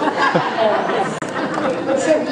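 Many children's voices talking and calling out over one another at once, with no single voice standing out.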